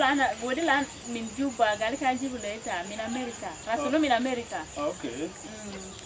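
A man and a woman talking, with a steady chirring of crickets high in the background.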